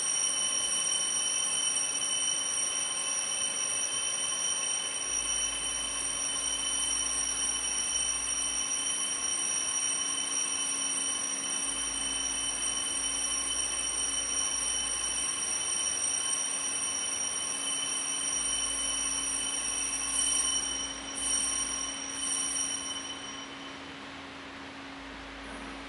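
A steady high-pitched ringing of several tones held together without change, stopping shortly before the end. In the last few seconds there are a few brief rustling or clinking sounds.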